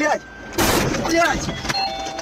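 A short, loud burst of noise about half a second in as a truck trailer slams sideways into a roadside pole, heard from inside the following car. A man then shouts in alarm, and there is a sharp knock near the end.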